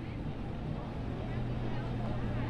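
Steady low hum of an idling vehicle engine over outdoor background noise, the hum firming up about a second in.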